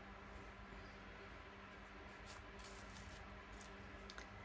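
Near silence: a low steady hum, with a few faint rustles and ticks of paper cut-outs being shuffled in a plastic box.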